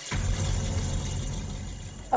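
Dramatic background-score sting from a TV serial: a sudden, dense burst with a deep rumble and hiss that fades slowly, leading into a scene change.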